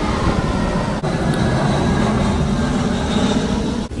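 A loud, steady low rumble.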